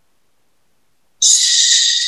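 A high-pitched, whistle-like steady tone, about a second long, starting about a second in after silence.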